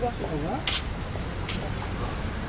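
Low, steady outdoor rumble with a voice briefly at the start, then two short, sharp scraping clicks about a second apart.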